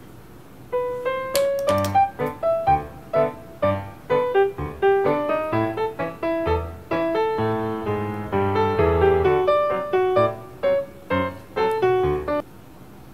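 Background piano music: a lively melody of short, separate notes that starts about a second in.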